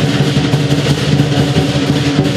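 Live lion dance percussion: the big Chinese lion drum with clashing cymbals and a ringing gong, playing a fast, even beat.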